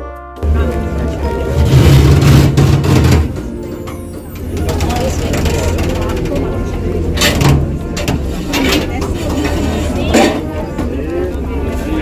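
A boat's engine rumbling loud and low with wind on the microphone while travelling on the canal, cutting in just after a snatch of music ends. From about four seconds in, indistinct voices and bustle at a water-bus stop over a steady low hum.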